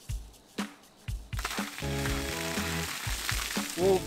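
Background music with a drum beat and bass. About a second and a half in, a steady hiss of pooled rainwater pouring off the edges of a rooftop tent's canopy and splashing down, as the canopy is pushed up from inside.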